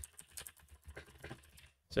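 Computer keyboard typing: a quick, quiet run of key clicks as a short line of text is typed, stopping shortly before the end.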